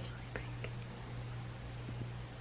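Faint whispered speech and a few small ticks over a steady low hum.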